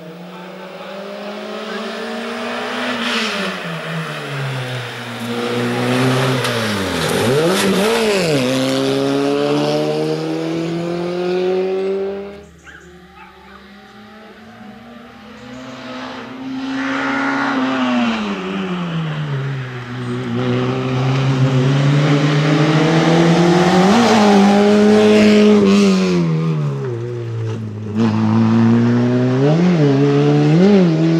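Slalom race car's engine revving up and down over and over as it is driven hard through cone chicanes, the pitch climbing and then dropping off sharply at each lift, with quick up-down blips about a quarter of the way in and again near the end. It drops away for a few seconds before the middle, then comes back louder.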